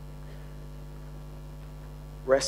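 Steady low electrical mains hum, an unchanging buzz with no other event.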